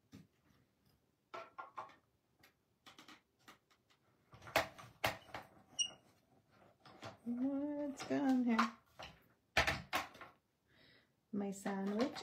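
Clicks and knocks from a Stampin' Up! mini cut-and-emboss machine as a die sandwich is pushed in and the hand crank is worked, with a brief squeak partway through; the roller is not rolling and the plates are not feeding. A short murmured voice comes in the middle.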